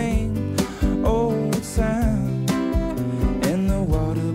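Live acoustic pop-rock: a steel-string acoustic guitar strummed in a steady rhythm over a drum kit, with a man singing a few sliding vocal phrases.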